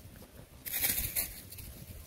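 Dry fallen leaves rustling and crackling underfoot, with a louder burst of crackling about two-thirds of a second in that lasts about half a second.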